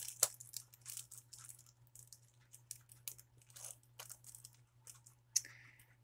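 Thin clear plastic packaging bag being picked at and pulled open by hand: faint, irregular crinkling with small ticks, and a slightly sharper crackle about five and a half seconds in.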